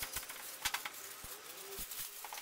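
Quiet handling of a clear plastic bag wrapped around eggplant: a few scattered soft clicks and crinkles, with a faint short tone about midway.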